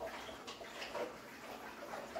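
Faint water sounds from a large aquarium: low splashing and trickling at the surface, with a few soft small splashes about half a second to a second in.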